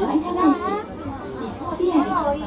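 Voices talking throughout, over a faint low running hum from the moving monorail car.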